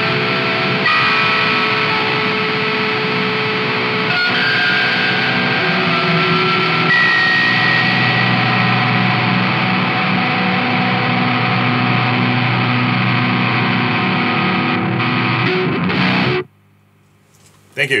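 Electric guitar played through the Doomsday Effects Cosmic Critter fuzz pedal: thick fuzzed chords and held notes that sustain and overlap. The playing cuts off suddenly about sixteen seconds in.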